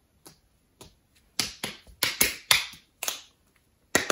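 A person's hands making a quick, uneven series of about ten sharp snaps and claps.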